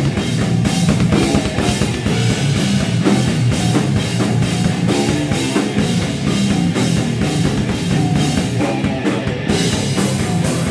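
Extreme metal band playing live: heavily distorted electric guitar over a drum kit hammering out a fast, steady beat.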